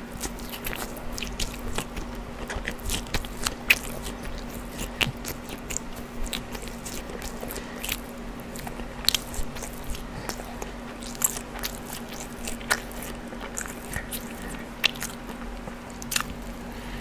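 Close-miked chewing of a mouthful of brisket sandwich, with many irregular wet mouth clicks and smacks.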